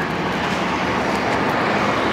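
Steady motor-vehicle noise: an even rumble under a hiss, with no single event standing out.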